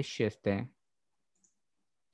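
A man speaking Telugu for a moment, then silence broken by one faint click about a second and a half in.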